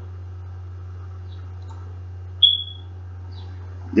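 A steady low hum, with one short, high-pitched chirp that falls slightly in pitch about two and a half seconds in.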